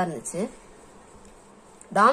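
Speech trailing off in the first half second, then a pause holding only a faint, steady background hiss.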